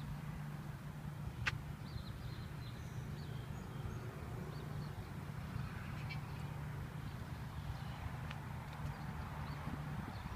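A steady low hum under faint outdoor background noise, with a single sharp click about one and a half seconds in.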